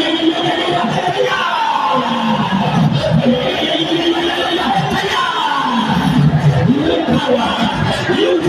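A man's voice through a microphone and PA singing in worship, with music and the voices of a congregation joining in.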